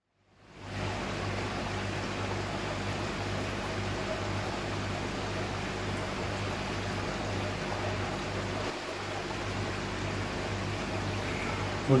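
Charles Austen ET80 linear air pump running: a steady low hum with a hiss over it. The sound fades in during the first second.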